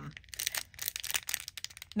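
Sticker packs being handled: faint, irregular crinkling and rustling of their packaging.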